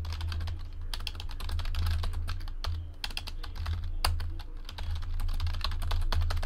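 Typing on a computer keyboard: a quick, uneven run of keystroke clicks, entering text.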